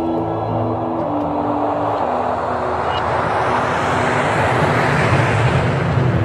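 Film soundtrack: held music notes fade out over the first two seconds under a rush of noise that swells steadily louder, with the rumble of a passing aircraft or city.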